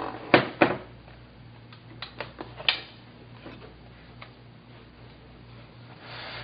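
Plastic clicks and knocks of a laptop battery pack being unlatched and slid out of its bay: two sharp clicks about a third of a second apart near the start, then a few softer clicks around two to three seconds in.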